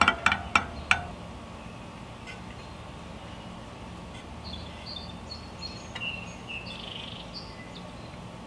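A few short metallic pings in the first second, each with a brief ring, from bicycle spokes being plucked to check their tension. Then birds chirp faintly in the background over a steady outdoor hush.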